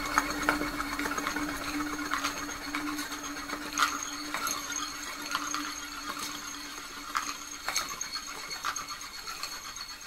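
Musique concrète noise piece made of modified recordings of found instruments: scattered clicks, taps and rattles over a steady low hum that fades out about eight seconds in, with two thin high tones held above.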